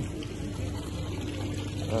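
Water pouring and trickling in a small bamboo water fountain, a steady splashing over a low steady hum.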